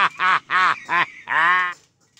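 Comic laugh sound effect added in editing: a run of short pitched calls, each bending up then down, ending near the end in one longer held call.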